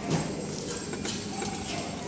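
A degu running in a plastic exercise wheel: the wheel makes repeated clicking and clattering over a steady low hum.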